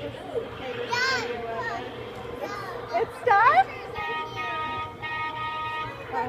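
A toddler's high-pitched vocalising, loudest about three seconds in, over a kiddie ride's electronic tune that holds steady notes near the end.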